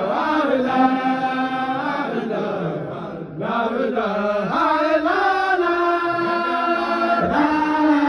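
Men's voices chanting a Sufi zikr (dhikr) in long, drawn-out held notes that glide from one pitch to the next, with a brief pause about three seconds in.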